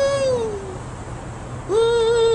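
A man singing long wordless notes: one swoops up and then falls away, and after a short pause a second, louder held note begins near the end.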